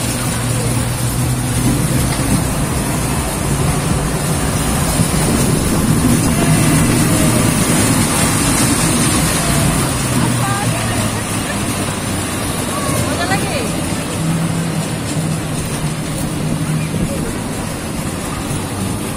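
Small caterpillar-style kiddie roller coaster train running around its track: a steady rumble of wheels on the rails with a low hum, and riders' voices faint underneath.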